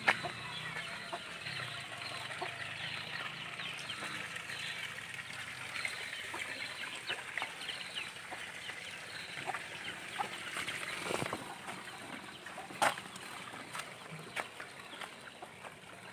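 Chickens clucking over a dense, steady background of short high chirps, with a few sharp knocks: one at the start and two more in the second half.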